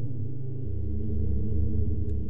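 Background music: a low, sustained drone that shifts to a new chord about two-thirds of a second in.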